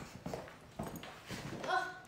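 A few soft, irregular footsteps on a hard floor.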